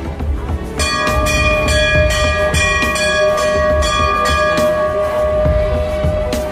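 A temple bell starts ringing about a second in. It is struck again and again, and its ring holds on until near the end, over background music with a steady low beat.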